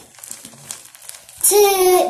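Faint crinkling rustle, then a child's voice from about one and a half seconds in, drawing out a word in a sing-song way.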